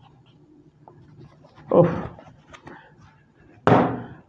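Faint marker strokes on a whiteboard in a quiet room, broken by a man's short 'oh' about two seconds in and a brief sharp burst of noise near the end.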